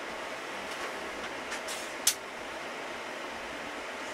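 Steady whir of rack servers' cooling fans, with a few clicks and one sharp metallic click about two seconds in as the IBM x3650 server is slid out of the rack on its rails.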